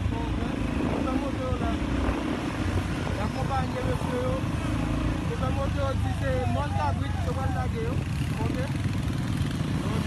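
Several motorcycle engines running steadily as a group rides along, with people's voices talking and calling over the engine noise.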